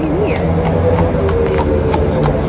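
A carriage horse's hooves clip-clopping on asphalt at a walk, a few strikes a second, as the horse-drawn carriage passes close by. Under it runs a steady low hum of engine traffic.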